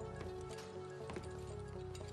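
Film soundtrack music of held, sustained notes, low and mid, with light irregular knocks or clicks over it, several a second.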